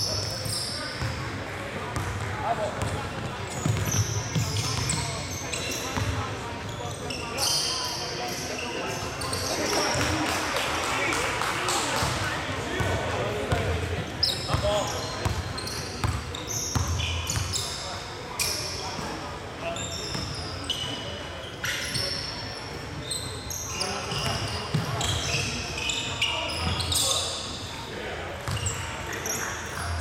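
Basketball game on a hardwood gym floor: the ball bouncing as it is dribbled, repeated short high-pitched sneaker squeaks, and indistinct player voices.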